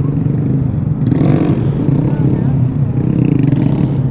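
Honda Grom's 125 cc single-cylinder engine idling steadily through its stock exhaust.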